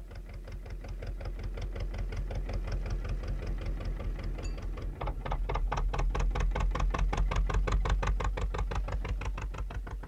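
Small motorboat's engine chugging in rapid, even beats, growing louder about halfway through.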